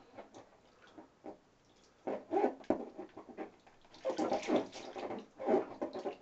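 A baby vocalizing in short spells, once about two seconds in and again, louder, from about four seconds in.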